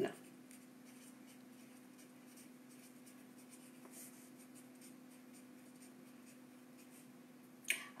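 Faint scratching strokes of handwriting, over a steady low hum.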